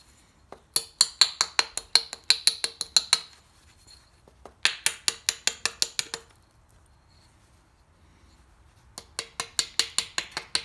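A copper-tipped flintknapping tool tapping along the edge of a piece of obsidian: quick runs of sharp, glassy clicks, about five or six a second. The taps come in three runs, from about a second in to about three seconds, again around five to six seconds, and from about nine seconds on.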